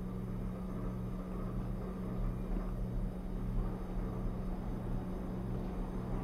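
Steady low background hum with a lower tone pulsing about twice a second, and no other events.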